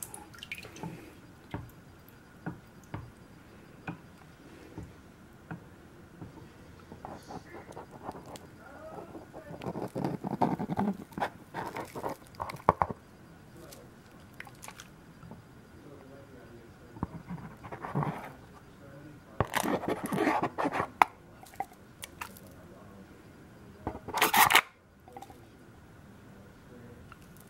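Water sloshing and dripping in a plastic gold pan as it is tilted and rinsed over a tub of water: quiet stretches broken by a few swishes and splashes, the loudest near the end, with light clicks of the pan.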